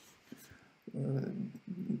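A pause with a few faint clicks, then, about a second in, a man's short wordless hum at a steady low pitch, held for about half a second.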